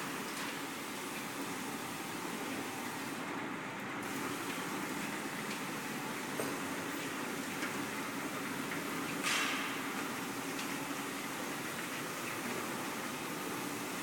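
Corrugated board chain-feed slotter machine running idle with a steady mechanical hum, a few light ticks, and a short hiss about nine seconds in.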